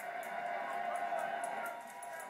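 Animatronic zombie baby toy giving a drawn-out, wavering electronic cry from its speaker.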